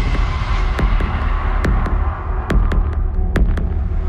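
Dramatic background score: a low throbbing pulse with scattered sharp ticks over it.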